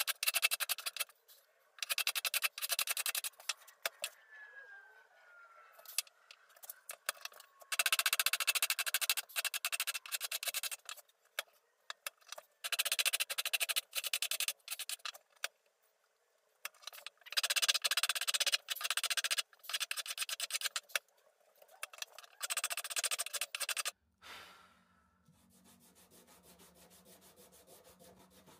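Hand tool working a wooden mallet handle: runs of quick scraping strokes lasting one to four seconds, with quiet gaps between them. The strokes stop about four seconds before the end.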